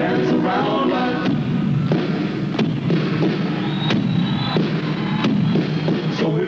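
Live rock band playing on a worn concert recording. Singing stops about a second in, leaving an instrumental stretch punctuated by several sharp percussive hits.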